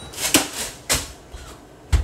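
A wooden rolling pin striking a zip-top bag of Oreo cookies on a countertop to crush them: a few sharp knocks, two close together early, one near the middle and the loudest just before the end.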